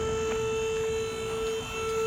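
A steady hum with a low, uneven rumble beneath it, and no speech.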